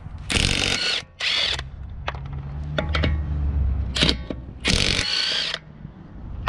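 Cordless brushless half-inch impact wrench hammering lug nuts loose on a car wheel, in four bursts: two close together near the start, a short one about four seconds in and a longer one near the end. A few light clicks fall in between.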